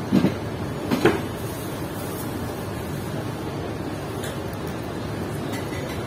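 Hands mixing sliced cucumber salad in a plastic bowl, with two short knocks, one just after the start and one about a second in, over a steady background noise.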